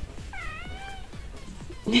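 A newborn kitten giving one short, high-pitched mew that dips and rises again, in reaction to having its belly scratched.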